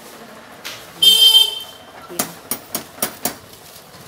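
A vehicle horn toots once, briefly, about a second in, followed by five sharp knocks in quick succession over about a second.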